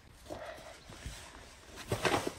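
Snow shovel working packed snow on a pavement: faint crunching and scraping of the blade and of steps in the snow, with a louder scrape starting right at the end.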